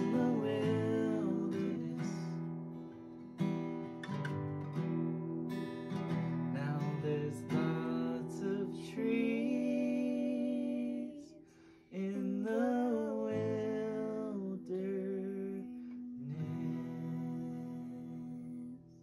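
Acoustic guitar strummed in chords while a man sings the song's closing lines, his voice wavering over the chords; the playing drops away briefly just before twelve seconds in, then picks up again.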